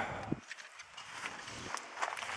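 Faint rustling and light scattered clicks of footsteps in dry leaf litter.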